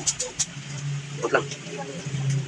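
A kitchen knife cutting through a slaughtered chicken's neck on a concrete floor, giving three short sharp clicks in the first half-second, over a steady low hum.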